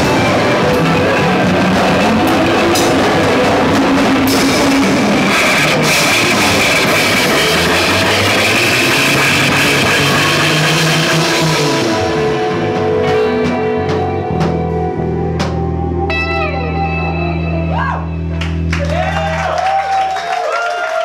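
Live rock band playing loud with drum kit, bass and electric guitar. About twelve seconds in the drums stop, leaving sustained bass notes and electric guitar run through effects pedals, with swooping pitch slides near the end as the song winds down.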